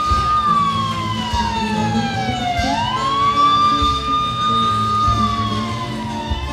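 A siren wailing: it holds a high pitch, slides slowly down, sweeps back up and holds, then starts falling again near the end, over steady drumbeats.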